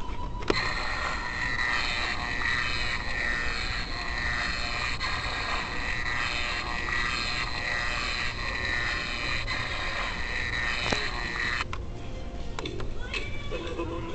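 Battery-operated Halloween decoration playing its recorded sound through a small, tinny speaker. It switches on with a click about half a second in and cuts off abruptly near the end.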